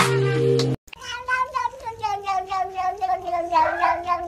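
Background music that cuts off abruptly just under a second in, then a domestic cat's long, wavering meow that pulses rapidly, about seven times a second, and sinks slightly in pitch as it goes on.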